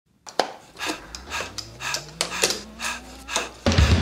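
Electronic music intro: sharp percussive hits about twice a second over a slowly rising tone, with the full beat and bass coming in near the end.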